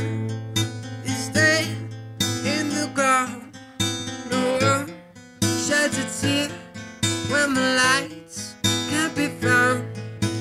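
A man singing while strumming an acoustic guitar, performed live as a solo act.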